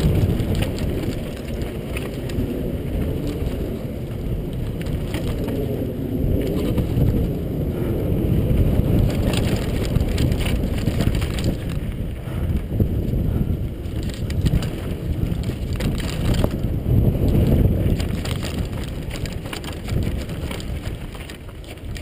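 Downhill mountain bike descending a rocky dirt trail: tyres crunching over loose rock and gravel, the bike rattling with many irregular knocks over the bumps, under a continuous rumble of wind on the helmet-mounted camera's microphone.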